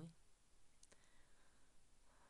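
Near silence broken by a faint mouse click, two close ticks about a second in, as the lecture slide is advanced.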